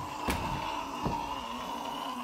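A long, steady vocal moan held on one pitch, with two faint knocks inside it.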